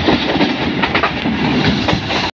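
A passenger train running, heard from inside a carriage by the window: steady running noise from the wheels on the rails, with irregular knocks and rattles.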